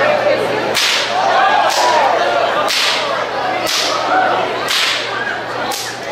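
A long Aperschnalzen whip being cracked by one person, six sharp cracks in a steady rhythm of about one a second.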